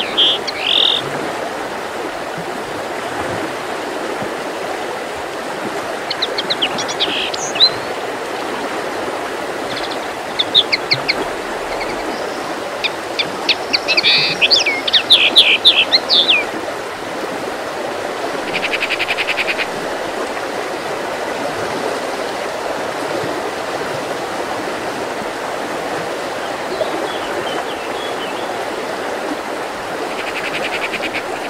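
Small songbirds calling and singing in short scattered phrases, loudest in a burst of quick chirps around the middle, followed by one fast, even trill. Underneath runs a steady background rush.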